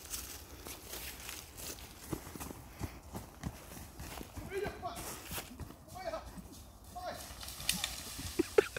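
Running footsteps crunching and thudding through dry leaf litter and undergrowth in woodland, irregular and hurried. A few short vocal shouts come in the second half.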